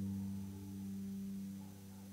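Faint background music: a soft chord of held tones sustained steadily and slowly fading away.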